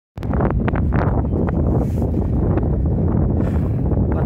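Strong wind buffeting the microphone: a loud, low, steady rumble with occasional crackles.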